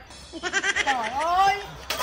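A person's drawn-out vocal cry, wavering at first, dipping and then rising in pitch, with a sharp click near the end.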